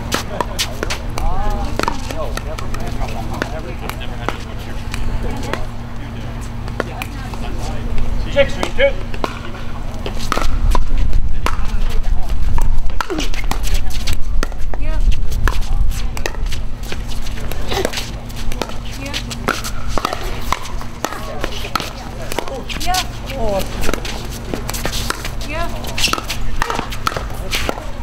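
Pickleball paddles popping against a plastic pickleball in a rally, with sharp hits at irregular intervals, coming more often in the second half, over a steady low rumble and hum.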